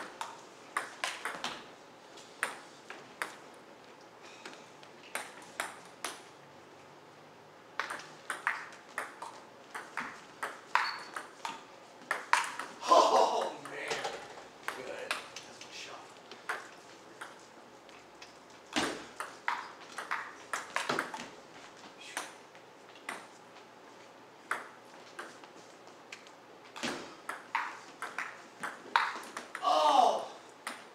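Table tennis ball clicking back and forth off rubber-faced paddles and the table in rallies, several hits a second, broken by short pauses between points.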